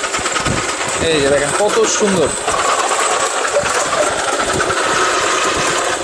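Electric vegetable slicer (salad maker) with its motor running steadily while it slices bitter gourd fed down its chute; a steady whine comes through the middle of it. People talk over it in the first couple of seconds.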